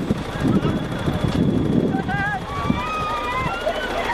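Indistinct voices over a steady low rumble. In the second half a high-pitched voice calls out in long wavering tones.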